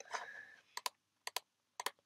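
Three quick double clicks on a computer, about half a second apart, as the hand replay is stepped forward.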